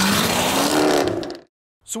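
Jaguar F-Type's supercharged V8 accelerating, its note rising steadily in pitch over loud exhaust noise, then cut off abruptly a little over a second in.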